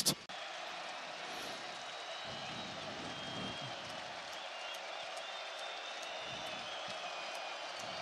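Steady stadium crowd noise: an even, continuous din from the stands with no single shout or clap standing out.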